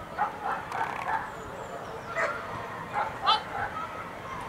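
German shepherd giving short barks and yips: four in quick succession in the first second, then a few more about two and three seconds in, the last of them the loudest.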